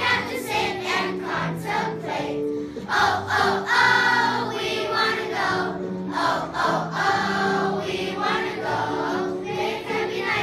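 A children's choir singing a song in unison over instrumental accompaniment.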